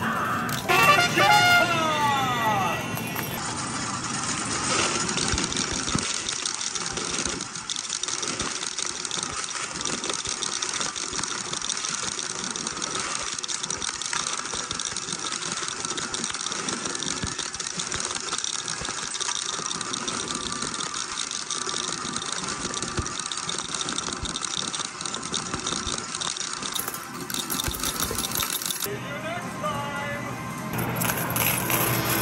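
Arcade medal pusher machine: metal medals clattering and sliding, with the machine's music and electronic sounds playing. Near the start there is a louder, brief swooping pitched sound.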